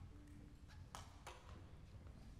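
Near silence: hall room tone with a low hum and two faint clicks about a second in.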